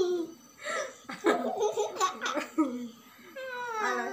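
A woman and a young boy laughing together, in several short bursts.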